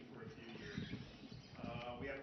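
A man speaking slowly and haltingly, with a drawn-out held vowel near the end.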